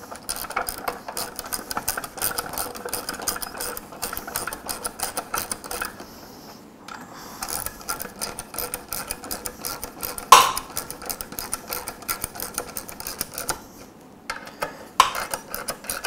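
Socket ratchet clicking rapidly in runs as the lawn mower's muffler bolts are tightened, with short pauses between runs. A single sharp knock comes about two-thirds of the way in.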